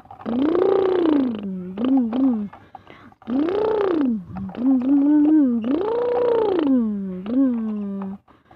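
A person's voice imitating an engine for a toy tractor: a low hummed vroom that rises and falls in pitch in three long swells of about a second each, with shorter wavering bits between them.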